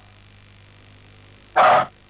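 A dog gives one short bark about one and a half seconds in, over a faint steady hum.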